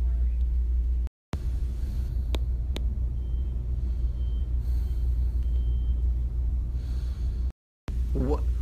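A steady low rumble, with two short clicks about two and a half seconds in. The sound cuts out completely for a moment twice, about a second in and near the end.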